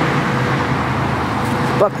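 Steady road traffic noise: a continuous rush of passing cars with a low hum under it.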